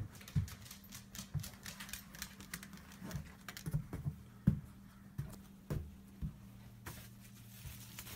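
A beagle's claws clicking irregularly on a hard tile floor as she walks, with scattered soft thumps of footsteps.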